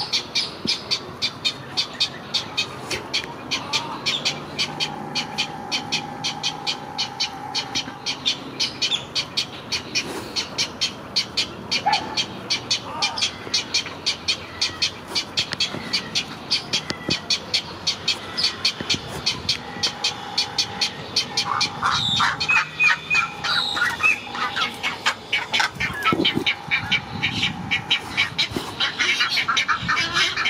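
Great egret chicks begging at the nest: a fast, steady run of clicking calls, about four a second, with louder squawks coming in later on. A steady humming tone sounds twice in the background.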